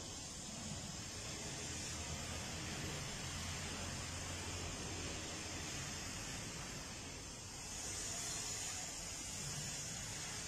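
Faint, steady background hiss with a low hum underneath and no distinct events; the high hiss grows a little brighter about three-quarters of the way through.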